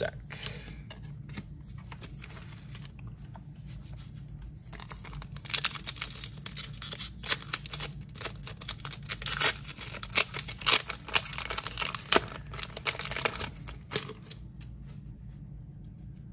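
A trading-card pack's plastic wrapper being torn open and crinkled in the hands: a run of crackling that starts about a third of the way in and stops a couple of seconds before the end.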